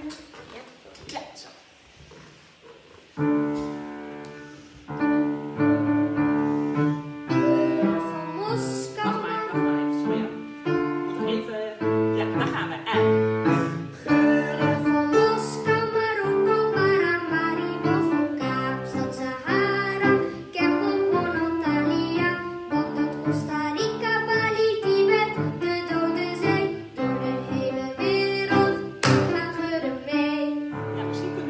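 Upright piano played with full chords and a running melody, coming in suddenly about three seconds in and going on without a break.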